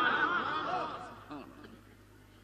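A man laughing close to a microphone: a few short chuckles that die away about a second and a half in.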